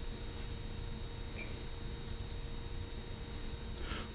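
A pause in speech: steady low hum of the room and sound system, with a faint high tone that steps up and down.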